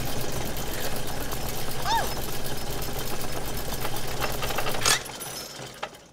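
Cartoon sound effect of a bedside vibrating machine, the 'Orgasmatron 5000', running with a steady mechanical buzz and a rapid rattling chatter. It cuts off abruptly about five seconds in as it is switched off, leaving a short fading tail.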